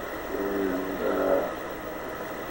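Old tape recording with a steady hiss, and a man's soft, hesitant voice drawn out over about a second, starting about half a second in ("and, uh...").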